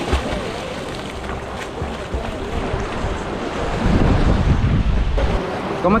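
A person plunging into shallow sea water with a splash right at the start, then sloshing seawater and waves. Wind on the microphone adds a louder low rumble about four seconds in.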